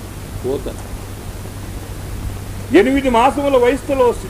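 A man's voice giving a spoken discourse: a short phrase about half a second in, then speech again from near the three-second mark, over a steady low hum and hiss in the recording.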